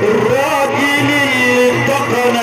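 Live Egyptian Sufi inshad music with the violin playing an ornamented melody line that slides and wavers up and down.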